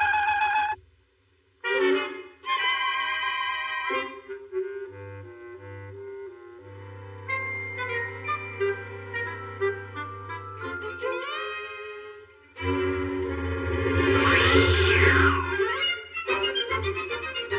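Cartoon background score: melodic instrumental music with sliding notes. It breaks off for a moment about a second in and swells louder near the end.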